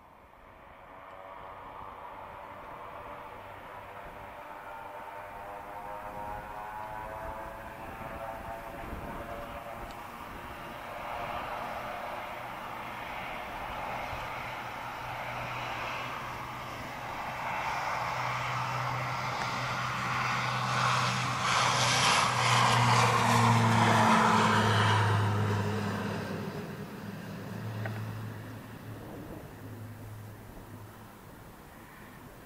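Beechcraft King Air 350's twin turboprop engines at takeoff power through the takeoff roll and liftoff, with a low steady propeller drone. It grows louder as the aircraft comes past, is loudest a little over twenty seconds in, then fades as it climbs away.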